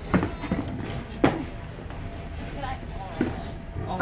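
Indistinct voices in a large room, cut by two sharp thuds about a second apart near the start and a fainter one later.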